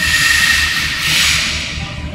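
A loud hiss, like air escaping, that starts suddenly and fades away over about two seconds, with a thin steady whistle in it at first.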